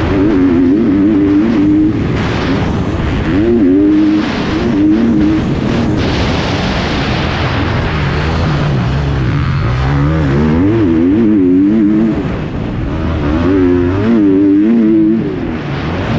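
2021 GasGas 250 motocross bike's engine revving up and down as it is ridden around a dirt track, the pitch dropping lower for a few seconds in the middle before climbing again. Heard from a helmet-mounted camera, with wind rushing over the microphone.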